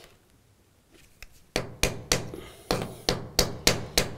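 A hand hammer knocking repeatedly on a wooden plate set into a concrete floor, where the glue-down carpet has been pulled back. There are about seven sharp strikes, starting about a second and a half in, at roughly three a second.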